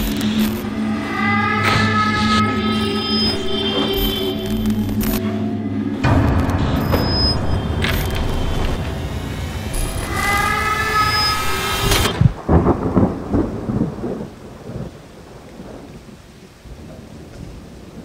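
Horror-film soundtrack: dark music and sound effects with thunder-like rumbles. It cuts off suddenly about two-thirds of the way through, leaving a low rumble that fades away.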